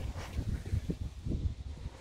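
Wind and handling noise on the microphone: an uneven low rumble.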